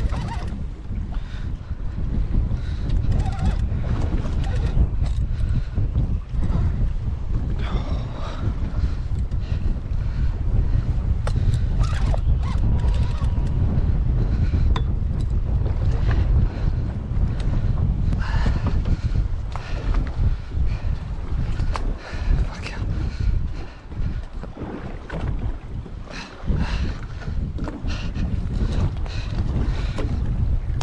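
Wind buffeting the microphone on an open boat at sea, a steady rumble, with short strained grunts from an angler pulling against a heavy fish at a few points.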